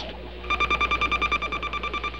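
Rapid electronic beeping at one steady pitch, about ten beeps a second, starting about half a second in. It is a sci-fi sound effect for spaceship machinery.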